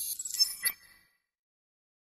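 Outro sound effect for an animated logo end card: a high, airy swell with bright clinking, chime-like tones and two sharp hits about half a second in, dying away about a second in.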